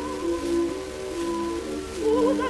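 Instrumental accompaniment on a 1923 acoustic 78 rpm disc recording, a few sustained notes changing pitch step by step in a short gap between the soprano's sung phrases, over faint record surface hiss. The soprano's vibrato note ends just as it begins.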